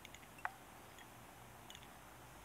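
Very quiet room with a few faint, light ticks, the clearest one about halfway through, as a thread bobbin is wrapped around a fly hook held in a fly-tying vise.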